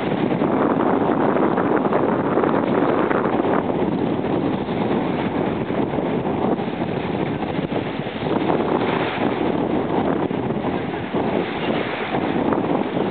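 Wind blowing across the camera microphone, a steady gusting noise that swells and eases without a break.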